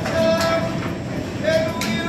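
Live rock band music: long held pitched notes over strummed guitar, with a couple of sharp strokes.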